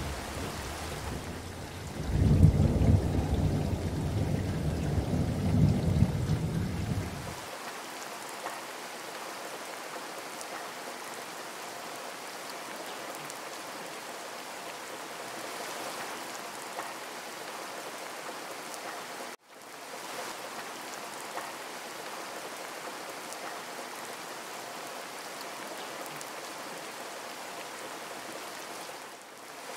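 Steady rain, with a roll of thunder rumbling low for about five seconds near the start. Past the middle the sound drops out completely for an instant, then the rain carries on.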